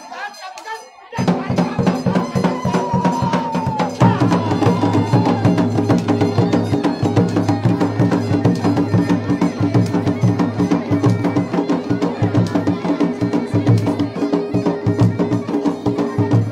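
Uttarakhandi jagar folk music led by drums and percussion, starting abruptly about a second in and running on with a dense, steady beat.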